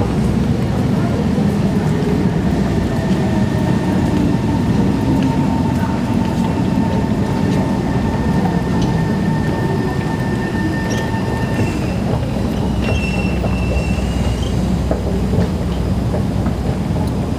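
Singapore MRT train at an elevated station platform: a steady low rumble with a thin high whine that holds for about ten seconds and stops abruptly, followed near the end by a higher whine.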